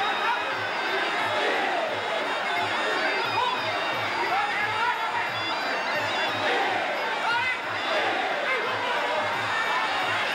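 Sarama, the live music of Thai boxing: a steady drum beat about two and a half beats a second under a wavering, gliding reed-pipe melody, with crowd noise.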